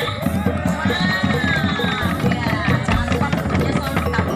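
Procession music played on the move: a bass drum beating under clattering bamboo percussion, with voices over it.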